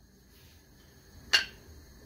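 A single short, sharp click of a small ceramic plate being picked up, about one and a half seconds in, against otherwise quiet room tone.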